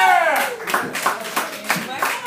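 A small audience clapping at the end of a live song, with one voice calling out a long falling cheer at the start.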